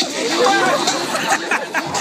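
Several people talking and shouting over one another, a dense chatter of overlapping voices.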